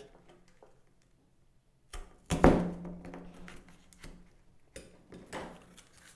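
A hand-held hole punch pressed through a folded double layer of cardboard: a small click about two seconds in, then a loud crunching pop as it breaks through, followed by softer crunching of cardboard being handled near the end.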